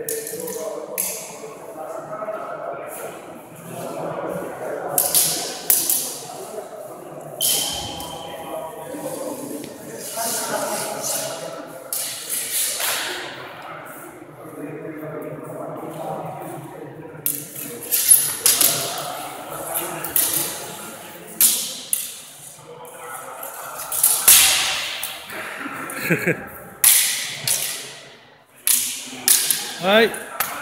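Steel cut-and-thrust sword blades clashing in a sparring bout: many sharp, ringing strikes scattered unevenly through, some in quick clusters, over background voices.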